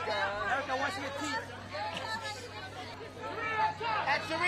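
Overlapping chatter of several voices, the press pack talking and calling out at once, with no single voice clear.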